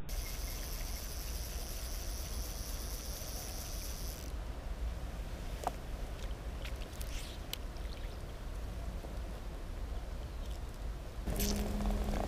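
Steady low rumble and hiss of wind on the camera microphone out on open water, with a few faint clicks about halfway through.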